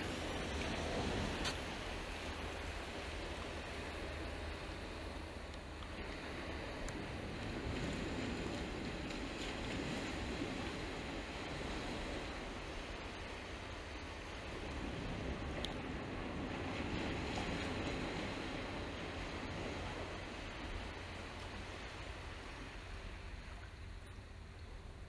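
Small surf breaking and washing up a sandy beach, swelling and easing every several seconds, over a low wind rumble on the microphone.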